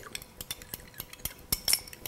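A metal fork stirring in a small glass bowl: quick, irregular clinks and taps of the tines against the glass, with one louder ringing clink about one and a half seconds in. Cornstarch and water are being mixed into a smooth slurry.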